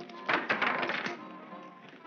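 Dice thrown in a craps game: a quick clatter of hard little clicks about a third of a second in that tails off, over soft background music.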